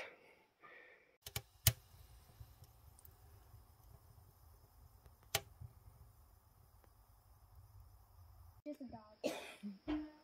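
Small kindling fire just lit in a wood stove's firebrick-lined firebox, burning with a faint low rumble and a few sharp pops.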